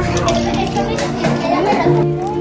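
Young children's voices as they play, over background music with held notes.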